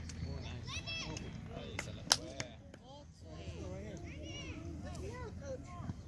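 A soccer ball kicked hard, a sharp smack about two seconds in with a fainter touch just before it, over faint distant shouting of players and spectators.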